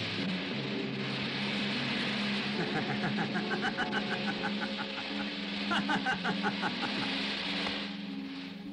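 Sustained low notes of a film score over a steady hiss, with a man laughing in quick rapid pulses, once a few seconds in and again near the end.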